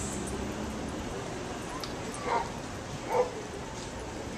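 Small dog barking twice, two short yaps about a second apart, over steady street background noise.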